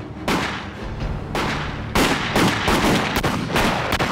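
A gunfight: about seven gunshots at uneven spacing, each followed by a short echo.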